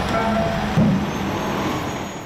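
Steady low rumble of a heavy diesel truck running, with a dull low thump a little under a second in.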